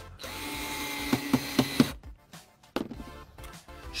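Silverline cordless drill driver running for just under two seconds, driving a stainless steel screw down through a decking clip into a timber joist, with a steady motor whine and a few sharp clicks near the end. Background music plays underneath.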